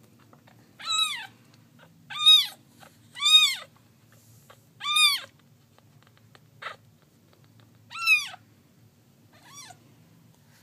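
Very young kitten mewing: six short, high-pitched cries, each rising and then falling in pitch, with uneven gaps between them. He is crying while being held up to be burped, and is mad, in his owner's word.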